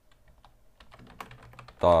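Computer keyboard keys clicking in a quick run of keystrokes as a short word is typed.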